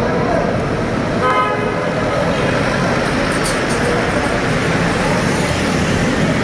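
Cars driving slowly through a road tunnel, a steady loud din of engines and traffic noise, with a car horn tooting briefly about a second in.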